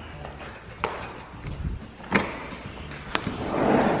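Sliding glass patio door being unlatched and opened: three sharp clicks of the handle and latch, then a swelling rush near the end as the door slides on its track.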